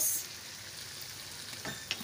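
Soy sauce, vinegar and chilli sauce sizzling in hot oil with ginger, garlic and onion in a non-stick wok, stirred with a silicone spatula; a steady sizzle, with a couple of light knocks near the end.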